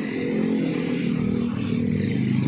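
A motorcycle engine running close by on the street, a steady hum with a slight dip in pitch partway through.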